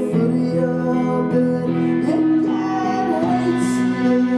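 Live band music: electric guitar and electric bass holding sustained chords, with a violin line moving above them.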